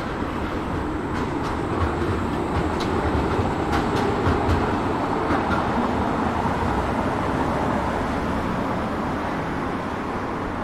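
A city tram running along the street: a steady rumble of steel wheels on rails, with a few short clicks in the first half, over road traffic noise.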